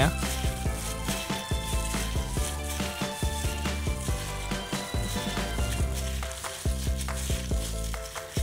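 Wet squelching and crackling of a plastic-gloved hand kneading marinated frog pieces with crispy-fry flour in a ceramic bowl, in irregular short squishes. Background music with steady sustained notes and a bass line plays under it.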